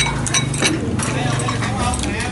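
A metal spoon clinking against a ceramic bowl while instant noodles are tossed in it, a run of quick clinks a few tenths of a second apart.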